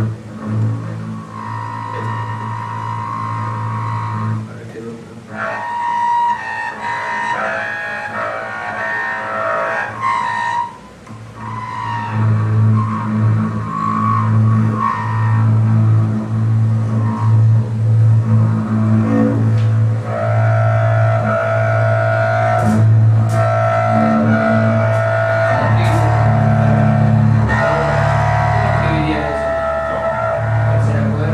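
Double bass played with the bow: a run of sustained low notes, with a brief pause about eleven seconds in.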